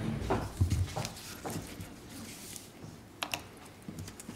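Scattered knocks, thuds and rustles of someone moving about near a microphone, with a sharper click a little after three seconds in.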